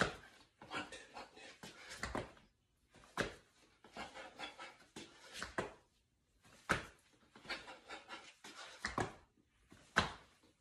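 A person panting hard through burpees with push-ups on a tile floor. Hands and feet thud and scuff on the tiles, with a sharp impact about every three seconds.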